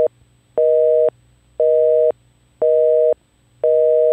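Telephone busy signal: a two-tone beep repeating about once a second, each beep half a second long with half a second of silence between.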